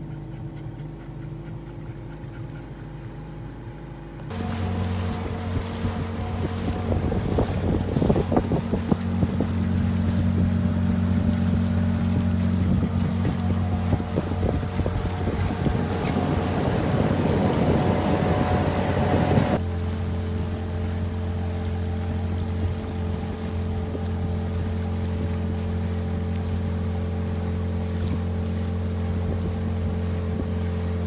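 Small outboard motor pushing an inflatable boat along, a steady engine drone throughout. About four seconds in it jumps louder, with a rush of wind and water over it, which cuts off suddenly around twenty seconds in, leaving the steady drone.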